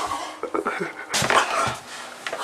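A person sighing and breathing out in short, breathy gusts, several times.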